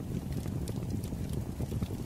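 Wood fire crackling in a fireplace: a dense, steady run of small crackles with occasional sharper pops.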